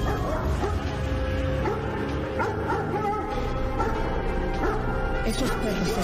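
Dogs barking and yelping, several short calls, over background music.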